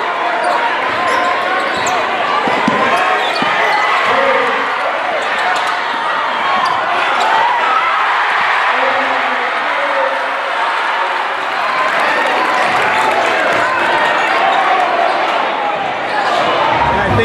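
Basketball game sound in a gymnasium: a basketball bouncing on the hardwood court over a steady din of many spectators' voices.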